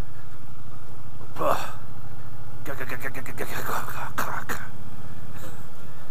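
Triumph Bobber Black's 1200cc liquid-cooled parallel-twin engine running steadily at low road speed, heard from the rider's position. Short bits of indistinct voice come over it about a second and a half in and again around three to four seconds in.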